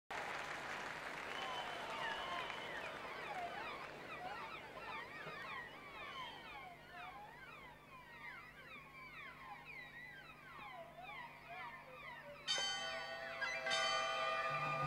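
A concert-hall audience whistling, many sliding whistles overlapping over a faint crowd hush that slowly dies down. About twelve and a half seconds in, the orchestra strings suddenly come in on a sustained chord.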